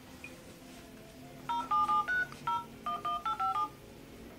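Mobile phone keypad tones: about ten quick touch-tone beeps, each two notes sounded together, as a phone number is dialled, starting about a second and a half in.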